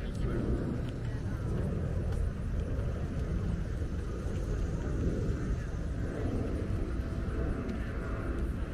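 A steady, irregularly flickering low rumble, with faint voices in the background.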